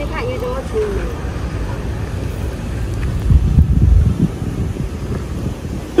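Wind buffeting the microphone, a low rumble that gusts hardest about three to four and a half seconds in, after a brief snatch of voice at the start.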